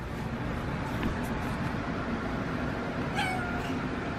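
A tortoiseshell house cat gives a short meow about three seconds in, over steady background noise.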